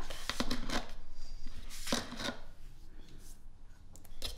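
A scoop digging into and scraping along a plastic tub of whey protein powder: a few short scrapes and rustles in the first second, another around two seconds in.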